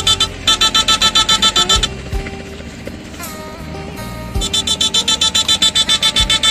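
Electrofishing rig pulsing a rapid, even electric buzz, about eight beats a second, as the current is switched into the water. It stops for about two seconds mid-way, leaving a lower steady hum, then starts again.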